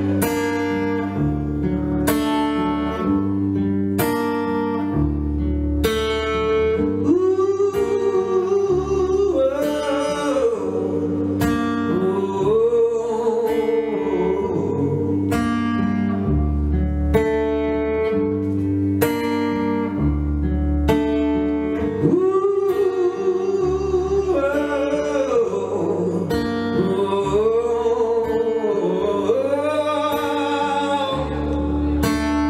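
Acoustic guitar strummed in a slow, steady rhythm, about one strum a second, with a man's voice singing long held, wavering notes over it in the middle and near the end.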